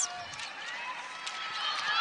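Basketball arena ambience: a low, steady crowd hum with faint sneaker squeaks and footfalls of players running on the hardwood court.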